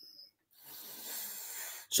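A person drawing a breath in through a headset or webcam microphone, a soft hiss of about a second and a half that stops just before he speaks again.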